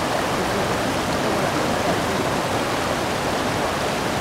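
Shallow mountain river rushing over boulders and stones: a steady, even water rush.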